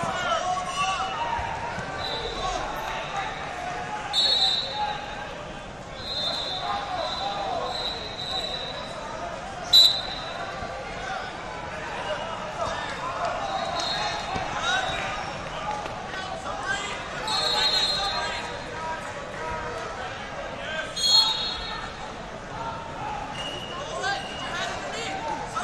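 Referee whistles sounding again and again at a high steady pitch, some short sharp blasts and some held for a second or more, the loudest at about ten seconds in and again near the end. Under them runs constant crowd chatter.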